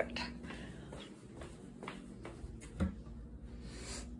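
Quiet indoor movement: faint footsteps and phone handling noise while walking, with a single soft knock a little under three seconds in.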